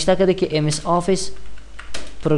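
Typing on a computer keyboard, with a few separate keystroke clicks near the end, under a person's voice speaking over the first half.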